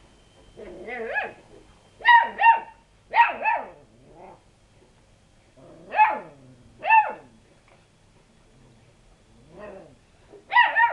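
Lurcher-cross puppy barking: short, high-pitched yapping barks, some in quick pairs and some single, with pauses between and a couple of fainter yips.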